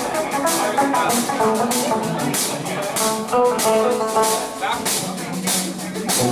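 A live reggae band playing, with guitar notes over a drum kit keeping a steady beat.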